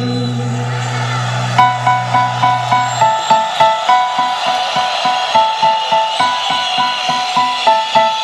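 Live band playing an instrumental break with no singing. A held low note runs until about three seconds in. From about a second and a half in, a melody of short, clipped notes plays over a steady beat of about three pulses a second.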